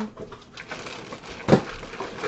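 Paper and cardboard being handled and rustled as a donated box is unpacked, with one sharp knock about one and a half seconds in.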